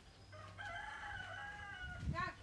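A rooster crowing once: a single long call lasting about a second and a half.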